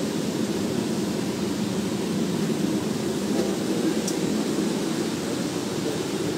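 Steady rumbling cabin noise inside a moving coach bus, even in level throughout, with no voices standing out.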